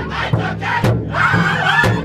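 Powwow drum group singing a crow hop song. Several men's voices sing together over a large shared powwow drum, struck in unison by the drummers about twice a second.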